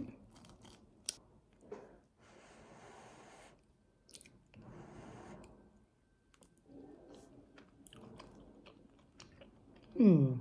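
Faint chewing and mouth sounds of a person eating porridge from a spoon, with a few light clicks, about one and two seconds in.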